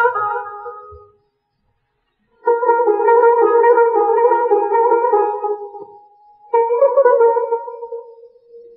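Violin playing slow, long held notes in the Persian mode Dashti: a note fading out in the first second, then after a short pause one note held about three and a half seconds and a shorter one near the end.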